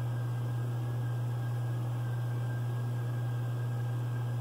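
Steady low hum with an even hiss, unchanging and without any distinct knock or click: room tone.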